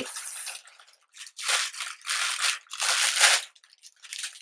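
Packaging rustling in three short bursts, about half a second each, as a bundle of curly hair extensions is handled and unwrapped.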